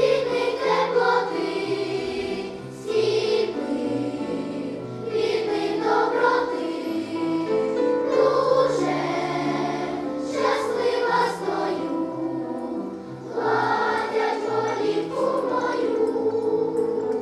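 Children's choir singing a song together, in phrases a few seconds long.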